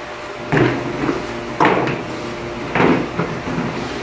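Three knocks about a second apart from a large black plastic tote as it is handled and moved into place.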